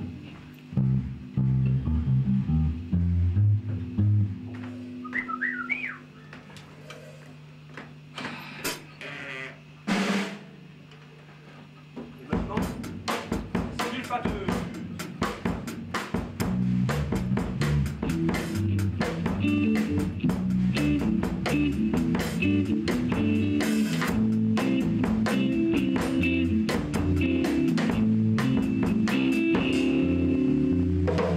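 Live band jamming in a rehearsal room: bass guitar and electric guitar notes, then a long held low note. About twelve seconds in, a drum kit comes in and the full band plays together, drums, bass and electric guitar.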